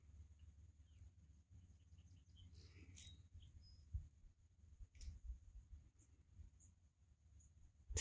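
Near silence: quiet outdoor ambience with a few faint, distant bird chirps and two or three soft clicks.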